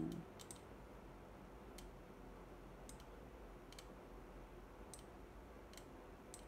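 Faint computer mouse clicks, about six of them roughly a second apart, over quiet room tone.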